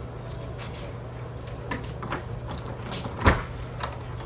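A front door being unlatched and pulled open: a sharp clack of the latch and door about three seconds in, then a smaller click, after a few soft knocks.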